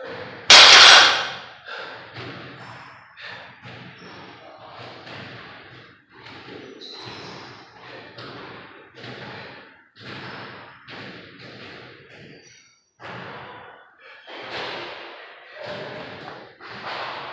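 A 315 lb barbell set down on a rubber gym floor with one loud thud about half a second in. It is followed by a run of heavy breaths in and out, about two a second at first and slowing, as the lifter recovers between deadlift reps.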